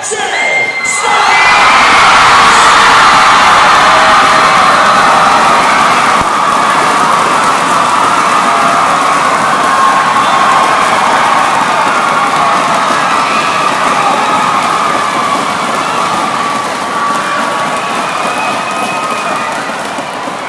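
A large crowd of high school students cheering and screaming in a school gym, swelling sharply about a second in and easing slowly afterwards.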